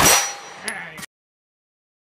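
A shot from an open-division 9mm Major race pistol, with the steel target ringing after the hit. A second sharp crack comes about 0.7 s in, and a third just after a second in. Then the sound cuts off suddenly into silence.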